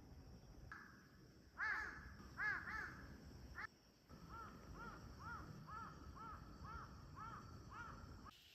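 Crows cawing: a few loud caws, then after a short break a run of about nine fainter, evenly spaced caws, over a low outdoor rumble.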